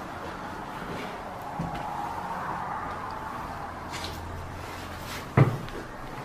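A person climbing back through a hole in a wall: a steady rustle of movement and handling, with a single sharp knock against wood about five seconds in.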